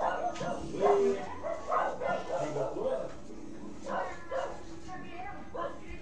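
A dog barking and yapping in repeated short barks that come in quick runs, over a steady low hum.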